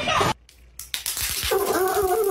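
A dog crying in a high voice, starting about halfway through after a brief silence.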